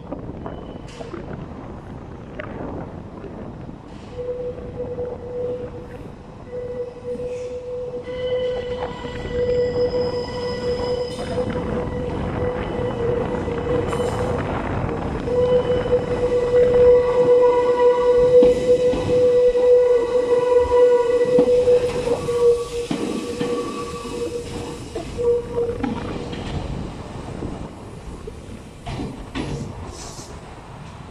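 Red Meitetsu electric train crawling out of the depot over curved turnouts, its wheels squealing in a long, steady, high-pitched tone over the running rumble, with clicks over the rail joints. The squeal sets in a few seconds in, is loudest past the middle as the train draws close, and fades out a few seconds before the end.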